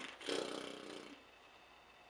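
A click, then a woman's short closed-mouth hum lasting under a second. Low room tone follows.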